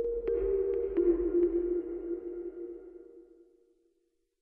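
Short closing music sting: two held tones, the second entering about a second in, with a few light pings over them, fading out over about three seconds.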